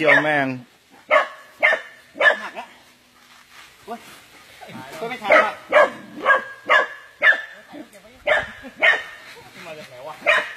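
A dog barking and yelping over and over, short sharp calls about two a second, with a brief pause partway through.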